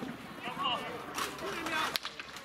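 Field hockey players' voices calling out on the pitch during play, with two sharp knocks, one just over a second in and one near the end.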